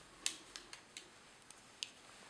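Fly-tying scissors being handled: a handful of faint, light clicks spread over two seconds.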